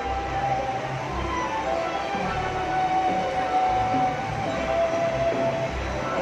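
Stage show soundtrack played over loudspeakers: a low, pulsing rumble under long held tones.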